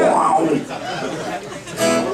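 Acoustic guitar strummed loosely between songs under voices and room chatter, with one louder strum near the end.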